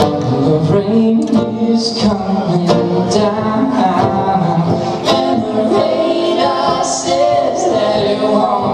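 Live acoustic duo song: acoustic guitar strummed steadily under a man's and a woman's singing voices.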